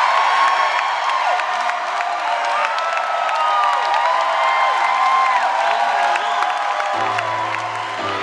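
Concert crowd cheering and whooping, long drawn-out cries rising and falling over a wash of noise. About seven seconds in, a sustained low keyboard chord enters beneath the crowd, the start of the song's intro.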